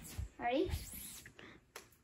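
A brief voice sound from one of the girls, with no clear words, about half a second in, among a few soft thumps of handling.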